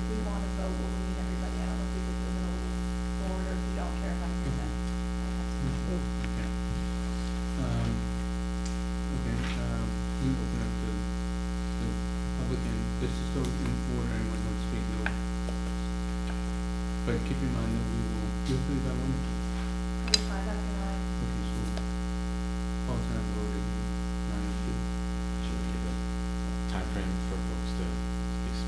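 Steady electrical mains hum through the recording, with faint low murmuring voices underneath and a single sharp click about twenty seconds in.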